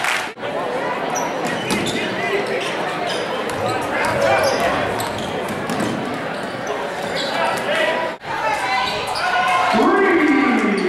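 Basketball being dribbled and bounced on a gym floor amid a crowd's voices and shouting in a large, echoing hall. The sound breaks off briefly twice, about a third of a second in and about eight seconds in.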